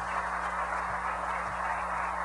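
Audience applauding steadily, with a low steady hum underneath.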